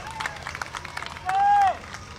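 Pause between numbers at an outdoor big band concert: scattered audience clapping and a short voice call that rises and falls about a second and a half in.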